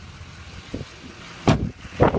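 A pickup truck's rear door shut with one loud thump about one and a half seconds in. Under it the truck's 6.6-litre Duramax diesel V8 idles steadily.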